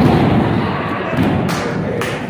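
Wrestlers' bodies slamming onto the wrestling ring mat: two heavy thuds, one right at the start and another about a second and a half in, over crowd noise.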